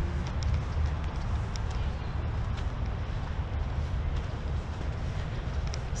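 Steady outdoor background noise: a low rumble with a fainter hiss above it and a few faint ticks.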